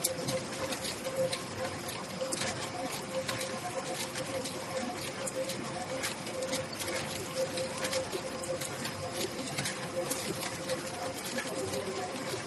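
Toroidal coil winding machine running as its shuttle ring turns through the core, laying copper wire onto a transformer coil. A steady tone runs under a dense, irregular rattle of small clicks.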